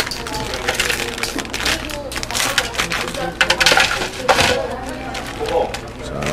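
Plastic instant-noodle packaging crinkling and rustling as it is handled over an aluminium foil tray, with irregular sharp crackles and clicks. One louder crack comes a little past the middle.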